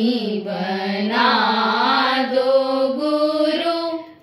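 A single voice singing a slow devotional chant, holding long notes that glide gently up and down in pitch.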